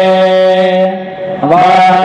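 Vedic recitation in ghana pāṭha style, the chanted words repeated in shifting orders. A syllable is held on one steady note for over a second, then the next syllable slides in near the end.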